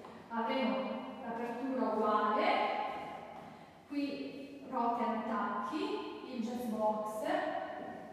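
Only speech: a woman talking in Italian, with brief pauses between phrases.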